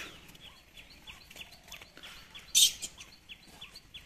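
Small birds chirping in a quick, steady series of short high calls, with one brief, loud rush of noise about two and a half seconds in.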